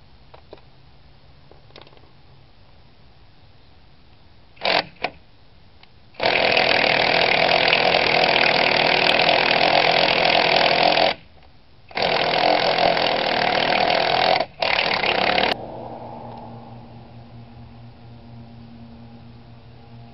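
Cordless impact wrench hammering on a socket driven over a stripped lug nut, working it loose: two short blips, then a run of about five seconds, a second's pause, and another run of about three and a half seconds broken by a brief stop.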